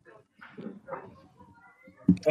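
A lull on a phone-in line: faint, indistinct voice sounds come over the line, then a few short faint tones near the end, before the next caller is connected.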